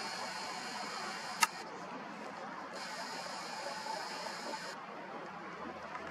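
Faint whir of a camera's zoom motor, running in two stretches of about two seconds each while the lens zooms in, over a low steady hiss. One sharp click comes about a second and a half in.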